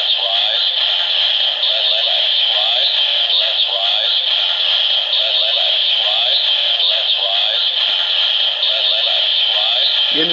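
DX Zero-One Driver toy belt playing its Metalcluster Hopper standby loop: electronic music with a synthesized voice repeating "Let's rise! Le-le-let's rise!". It comes through the toy's small speaker with no bass and loops steadily, the sign that the key is loaded and the belt is waiting for the transformation.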